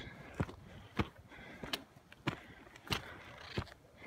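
Footsteps of boots on snow on a steep slope, a short crunch with each step, about six evenly spaced steps, a little over one a second.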